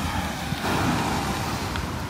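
Ocean surf breaking and washing up the beach, swelling about half a second in and easing off after a second or so, with wind rumbling on the microphone underneath.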